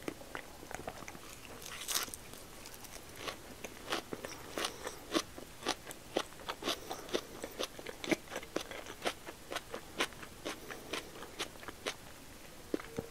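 Close-miked chewing of a mouthful of pork-belly-wrapped rice ball (nikumaki onigiri): a steady run of sharp mouth clicks, about two or three a second, thickening after the first couple of seconds.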